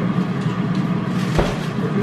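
A refrigerator door shuts with a single thump about one and a half seconds in, over a steady low hum.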